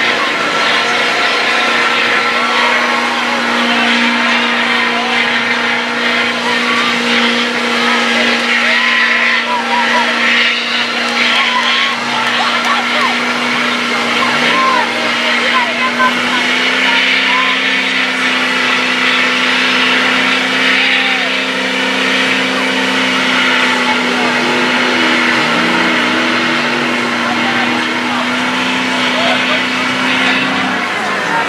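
Chevy mega truck on 35.5-inch tractor tires grinding through deep mud, its engine held at steady high revs with an unchanging tone; a second, lower engine tone joins about halfway. Spectators' voices murmur underneath.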